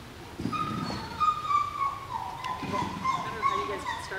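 A dog's long, high-pitched whine, wavering slightly in pitch, held for most of the few seconds after it starts about half a second in. It is the excited vocalising of a dog running an agility course.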